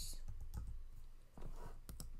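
A few separate computer keyboard keystrokes as the last letters of a word are typed.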